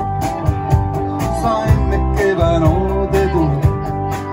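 Live rock band playing: electric guitars over bass and a steady drum beat, with a lead guitar line that bends and slides between notes.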